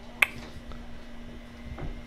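Plastic KillZone three-way rig connector snapping shut on the fishing line: one sharp click shortly after the start.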